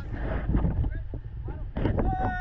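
Heavy, uneven low rumble of buffeting on a GoPro's microphone aboard a river raft, with scattered knocks and a short louder burst near the end; faint voices under it.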